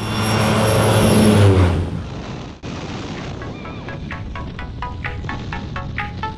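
A loud rushing sound with a low engine drone, like an airplane passing close by, dips slightly in pitch and fades about two seconds in. Then music with a steady beat of short, plucked-sounding notes comes in.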